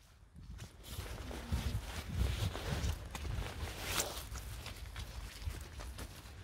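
Horses' hooves on a soft, muddy sand track: faint, dull, irregular thuds as the horses move off.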